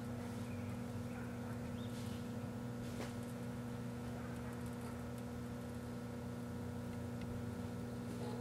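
1984 Kenmore microwave oven running with a steady electrical hum while it cooks a compact fluorescent bulb, with a couple of faint sharp clicks about two and three seconds in.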